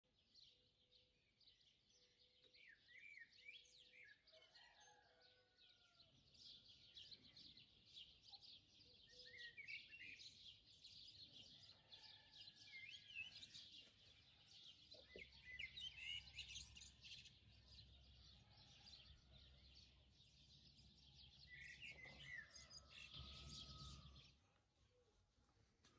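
Faint chorus of small birds chirping and twittering throughout, with a few short whistled glides. A faint low rumble joins in about halfway through.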